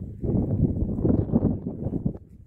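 Wind buffeting the phone's microphone in gusts, a low, uneven rumble that drops away at the very end.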